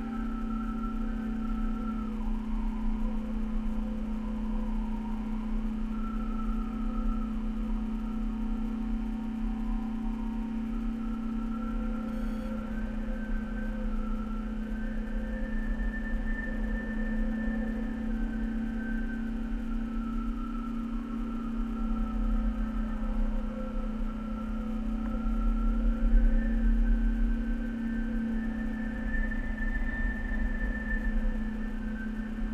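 A steady droning hum with fainter higher tones that slowly shift up and down in pitch, over a low rumble that grows louder about 26 seconds in.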